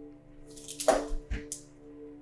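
Dice rolling onto a table, a short rattle of sharp clicks about a second in, for a wisdom saving throw. Steady ambient background music drones underneath.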